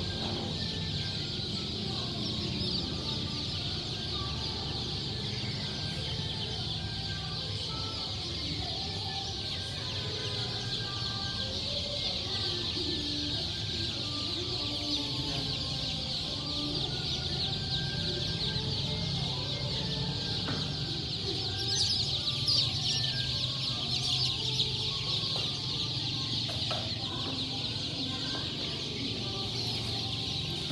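A large crowd of baby chicks peeping all at once: a continuous, dense chorus of high cheeps, swelling a little about two-thirds of the way through.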